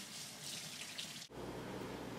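Water running from a faucet as a palette knife is rinsed under it, a fairly faint steady hiss. It cuts off suddenly about two-thirds of the way through, leaving a low hum.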